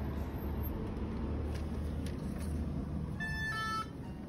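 Steady low street rumble with hiss, then near the end a short two-note electronic chime stepping down in pitch, like a shop door's entry chime sounding as the door is opened.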